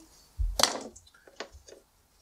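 Handling of a Cat5e cable as its nylon rip cord is pulled along, slitting the plastic jacket: a short rasping burst about half a second in, then a few light clicks.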